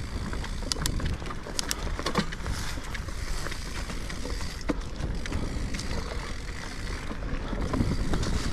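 Mountain bike ridden down a dirt forest singletrack: tyres rolling over the trail under a constant low rumble of wind on the microphone. Irregular clicks and knocks come from the bike rattling over bumps, bunched about two seconds in and again near five seconds.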